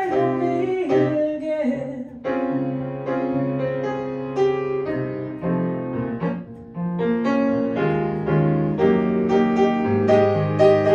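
Grand piano playing a passage of chords between sung lines, the singer's voice trailing off in the first second or two. The playing pauses briefly twice, about two seconds in and again past the middle.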